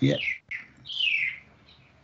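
A bird chirping: a short, high call falling in pitch, about a second in. A man says one word just before it.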